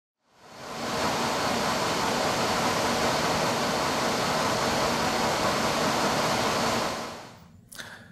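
Steady rushing noise from an LDS V8900 air-cooled electrodynamic shaker system running. It fades in about half a second in and fades out near the end.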